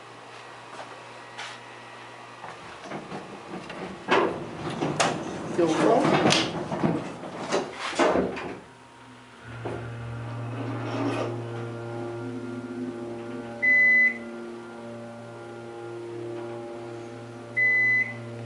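Otis hydraulic elevator setting off: the doors close with a clattering rumble, then about nine seconds in the hydraulic pump motor starts and runs with a steady low hum as the car rises. Two short high beeps sound about four seconds apart near the end.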